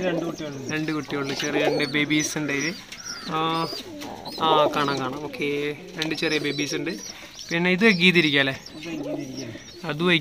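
Domestic pigeons cooing in a wire-mesh cage close by, with a man's voice talking over them.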